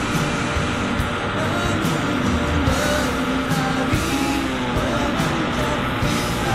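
Background music: a song with a singing voice, playing steadily throughout.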